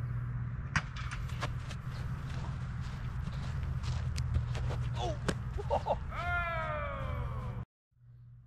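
Steady low outdoor rumble with scattered short knocks, and one drawn-out falling shout near the end; the sound cuts off abruptly just before the end.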